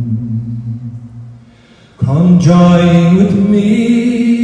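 Men's voices singing a slow folk ballad in long, drawn-out notes. A held note dies away over the first two seconds, then after a brief gap the singing comes back strongly on a new sustained note.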